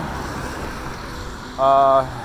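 Steady traffic noise on a street, a vehicle going by, then near the end a man's drawn-out hesitation sound held at one pitch.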